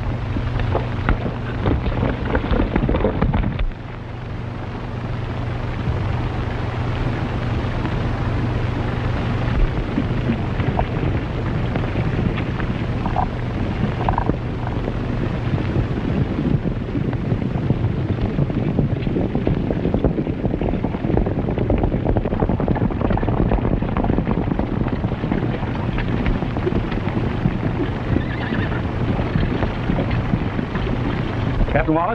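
A group of horses galloping: a steady, dense clatter of many hoofbeats, louder for the first few seconds, with a horse whinnying.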